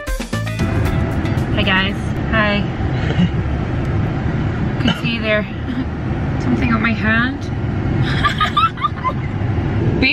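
Steady low rumble of a car's road and engine noise heard from inside the cabin, with a few short snatches of voice over it.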